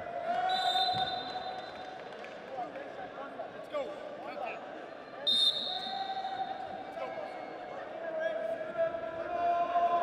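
Shouts and calls from voices echoing in a large wrestling arena, with a dull thump about a second in. Two short, high, shrill tones sound, one near the start and a louder one about five seconds in.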